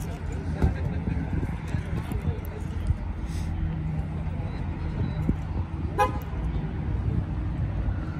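A steady low rumble of car engines idling, with one brief car-horn toot about six seconds in.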